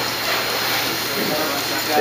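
Steady hiss of factory-floor background noise at an even level, with faint voices behind it.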